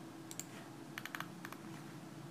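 Computer keyboard keys clicking in a few short clusters, over a low steady hum.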